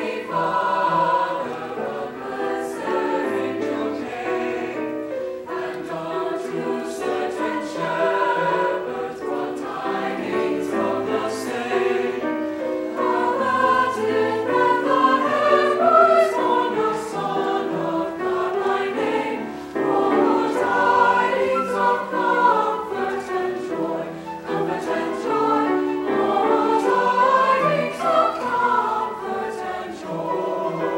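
A mixed high school choir of male and female voices singing together in harmony.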